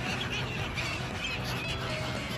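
A flock of gulls calling, many short overlapping calls throughout, over a steady low hum.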